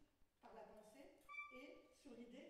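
Only speech: a woman talking into a handheld microphone, starting again after a short pause.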